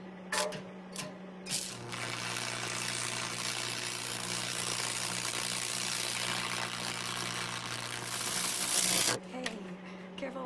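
Arc welding: the arc crackles and buzzes steadily with a low electrical hum, growing louder near the end and then cutting off suddenly. It is preceded by a few sharp clicks about a second in.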